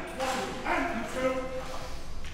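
Shouted military drill commands: short, clipped calls by a commander of troops, ringing in a large hall.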